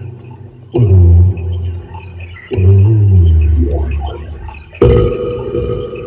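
Voices in a car cabin making long, low, drawn-out moans that slide down in pitch, three in a row, the last one held on a steady note.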